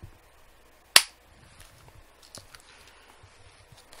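A cheap spring-powered airsoft pistol fires a single shot about a second in: one sharp snap, followed by a few faint mechanical clicks.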